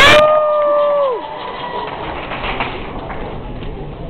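A single high-pitched vocal whoop from one person, sweeping up, held for about a second, then dropping away, followed by the steady murmur of the audience in the hall.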